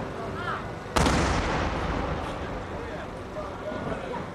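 Aerial cylinder firework shell bursting overhead: one sharp bang about a second in, followed by a long rumbling echo that slowly dies away.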